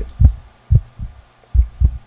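Heartbeat sound effect: low, dull double thumps in a steady lub-dub rhythm, three beats in two seconds, about 75 a minute.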